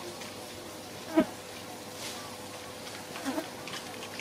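Steady faint insect buzz, broken by a short, sharp sound about a second in and a smaller one a little after three seconds.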